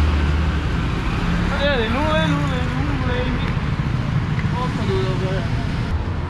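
Town street traffic noise: a vehicle engine's low hum close by dies away about a second in. Voices are heard over the steady road noise.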